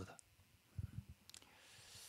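Near silence with a few faint clicks and low thumps from a handheld microphone being moved in the hand, then a soft breath-like hiss near the end.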